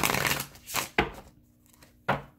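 A deck of tarot cards shuffled by hand: a rustle of cards in the first half second and a single sharp snap about a second in.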